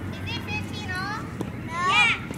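High-pitched children's voices calling out, with a loud shout right at the end. A couple of sharp knocks of a tennis ball off a racket fall in between.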